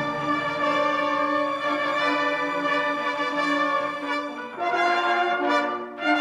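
A full school symphony orchestra (strings, woodwinds and brass) playing held chords with the brass to the fore. A new chord comes in sharply about four and a half seconds in.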